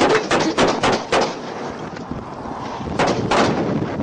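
Handgun shots: a rapid string of about six in the first second, then two more shots close together about three seconds in.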